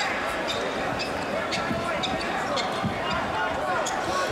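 Basketball being bounced on the court, with scattered sharp knocks, over steady arena crowd noise in a large hall.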